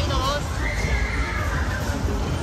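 Whip-ride cars rolling and swinging on the steel platform with a steady low rumble. About half a second in, a high, drawn-out squeal lasts about a second and a half.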